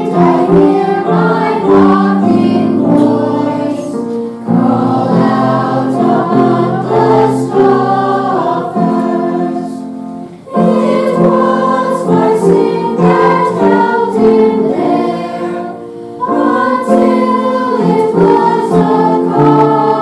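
A children's and youth choir singing a hymn in unison, in long sung phrases with short pauses for breath about ten and sixteen seconds in.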